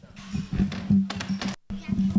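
Handheld microphone being handled and fitted into its stand, picked up by the mic itself: a series of irregular knocks and rubbing thumps over a steady low hum, with a brief dropout to silence about one and a half seconds in.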